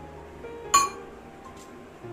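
A small stainless-steel cup clinks once against metal about three-quarters of a second in: one short, ringing clink.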